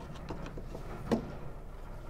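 Small clicks of flat screwdrivers prying at the metal retaining clip on a tailgate gas strut's end fitting, a few faint ticks followed by one sharper click about a second in.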